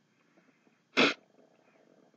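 One short, loud human sneeze about a second in.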